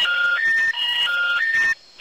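A phone-network intercept tone heard over the phone: a short electronic beep melody of three notes, played twice, stopping shortly before the end. It signals that the call has failed and comes just before the recorded 'subscriber cannot be reached' announcement.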